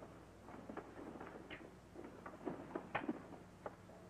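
Faint, irregular footsteps and small taps on a hard floor as a man crosses the room, over a low steady soundtrack hum.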